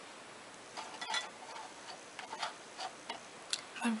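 A few faint, irregularly spaced clicks and small taps from a makeup brush and eyeshadow palette being handled.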